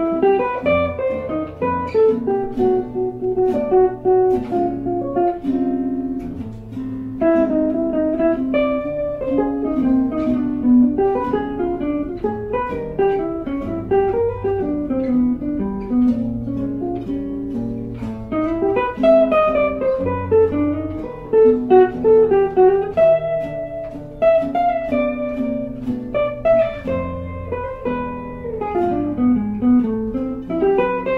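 Two jazz guitars playing together: a single-note melody line moving over chord voicings and low bass notes.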